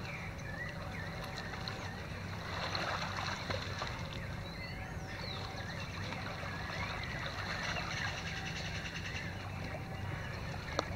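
Lakeside ambience of children splashing in shallow water, with a louder burst of splashing about two and a half seconds in and faint distant voices, over a steady low hum.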